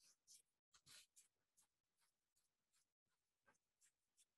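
Faint, quick swishes of a paintbrush stroking wet watercolor paper, about ten short strokes in a few seconds.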